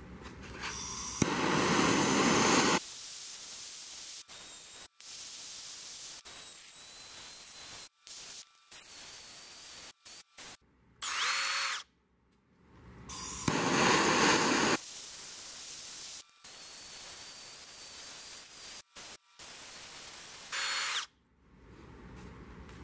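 A power tool run in short bursts: two louder runs of about a second and a half and two shorter ones, with a lower steady running noise between that cuts out suddenly several times.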